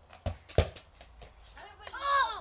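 A football being kicked on a paved patio: two sharp thumps within the first second, the second the loudest, then a few lighter taps.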